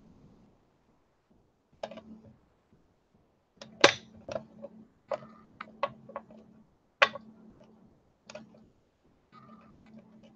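Irregular soft taps and knocks of a block of polymer clay cane being pressed and butted against a hard work table by hand to square it up, about ten in all, the loudest about four and seven seconds in.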